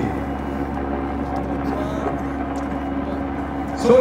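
A steady low hum made of a few held tones.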